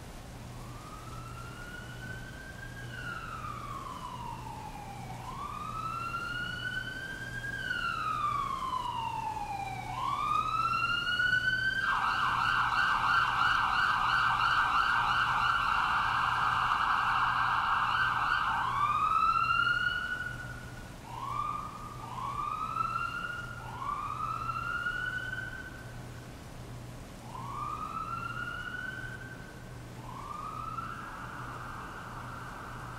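Emergency vehicle siren: a slow wail rising and falling in pitch, switching to a rapid yelp for about seven seconds in the middle, where it is loudest, then back to shorter rising whoops. Underneath is a steady hiss of rain.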